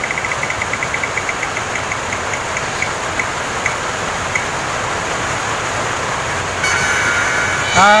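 Spin-the-wheel phone app ticking as its wheel spins, the ticks slowing down and stopping about four seconds in, then a short chime of steady tones near the end as the result comes up. A steady hiss of background noise runs underneath.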